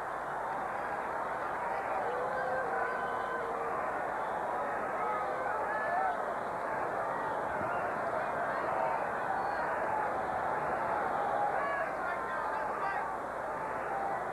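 Ballpark crowd chatter, a steady hubbub of many voices with scattered individual shouts and calls rising above it.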